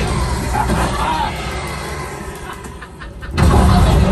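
Simulator ride soundtrack of the Millennium Falcon cockpit: a rumble of starship engine effects mixed with music. The sound dips quieter, then a loud low rumble breaks in suddenly about three and a half seconds in.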